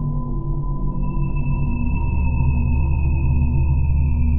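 Film soundtrack music: a low sustained electronic drone with steady held tones, joined about a second in by a high thin tone that sags slightly in pitch.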